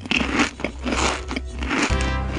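Comic sound effect of biting and crunching, several short noisy bursts over a low drone, acting out the threat 'I will eat your face'. Music comes in right at the end.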